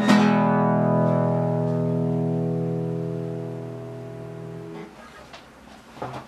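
Nylon-string classical guitar's closing chord: strummed once at the start and left ringing, fading slowly until it is stopped short a little before five seconds in. A couple of faint clicks follow near the end.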